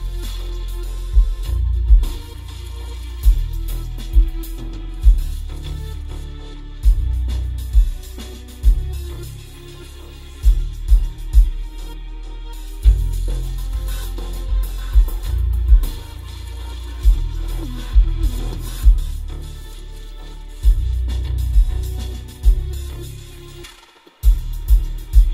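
Bass-heavy music with a beat played through a car audio system, its low end from a single 6.5-inch AD2206 D2 subwoofer in a 3D-printed PLA bass tube, heard inside the car cabin. Deep bass notes and punchy hits, roughly one to two a second, dominate.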